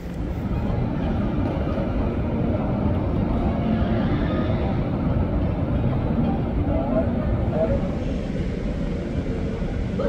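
Airport ambience: a steady low rumble of aircraft and ground equipment, with indistinct voices in the background. It gets louder about half a second in.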